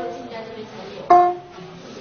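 A Nanyin pipa, a pear-shaped Chinese lute, plucked by a beginner. A note rings out, then one new note of the same pitch is plucked about a second in and dies away.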